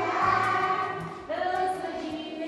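A class of children singing together in unison in the Misak language (Wam), with held notes and a new line beginning a little past a second in.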